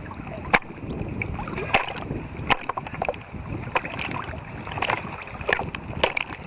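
Lake water sloshing and lapping against a camera held at the surface during a swim, with frequent short, sharp splashes and a low rumbling wash.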